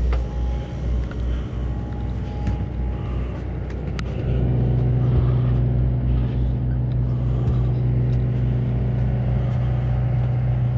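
Steady low drone of the boat's engine machinery heard from inside the cabin, with a deeper hum that becomes louder and steadier about four seconds in. A few faint clicks and knocks sit over it.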